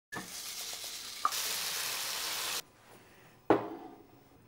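Food sizzling in a frying pan as it is stirred, with a short clink about a second in and louder sizzling that cuts off abruptly. Near the end there is one sharp knock with a brief ring as a plate is set down on a table.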